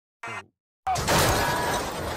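A brief pitched blip, then about a second in a loud crashing, shattering sound effect of breaking glass that carries on.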